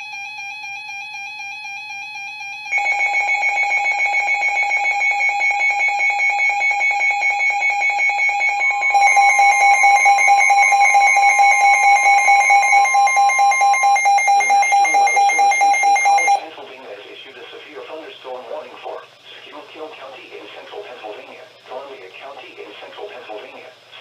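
Several NOAA weather alert radios going off together for a severe thunderstorm warning. A steady alarm tone is joined about three seconds in by louder rapid beeping from more radios, and from about nine to fourteen seconds by the National Weather Service's long warning alarm tone. The alarms cut off together about sixteen seconds in, and a quieter broadcast voice follows.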